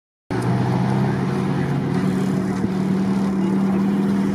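Old car engine running steadily at low revs, a constant low hum with no change in pitch.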